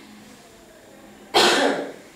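A woman coughs once, a single short cough that starts suddenly about two-thirds of the way in.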